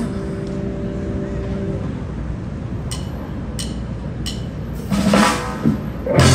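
Three sharp drumstick clicks about 0.7 seconds apart, a count-in for a band's next song, followed by a louder burst of sound near the end as the song starts. Before the clicks, a held note from the amplified instruments fades away.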